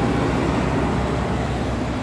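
Steady, fairly loud machine noise with a low hum underneath, unchanging through the pause.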